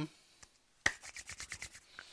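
Hands rubbed briskly together: a quick run of about eight short rubbing strokes, starting a little under a second in.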